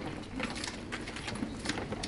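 Faint scattered clicks and rustles over a low steady room hum, in a pause between spoken words.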